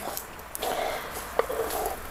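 Wooden spoon scraping diced cucumber off a wooden cutting board into a pot of simmering broth, with soft rustling as the pieces slide and drop, and two sharp clicks of the spoon against the board.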